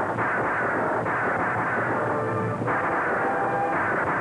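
Galloping horse team and a stagecoach's rumbling wheels, a dense steady rumble, mixed with music; held musical notes come through in the second half.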